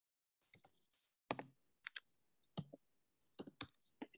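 Near silence broken by faint, irregular clicks and short scratches of a pen tip on sketchbook paper as small strokes are drawn, about seven in all.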